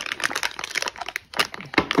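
Anti-static plastic bag crinkling and crackling as it is handled and worked at to get it open, with many quick, irregular crackles.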